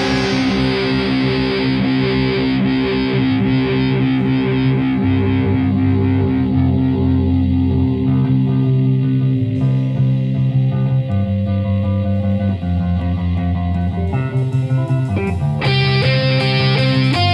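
Rock music: a distorted electric guitar holds ringing chords that change every couple of seconds, then sharp strummed attacks come back in near the end. No singing.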